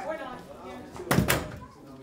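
A folding chair set down on the stage floor: a sharp double knock about a second in.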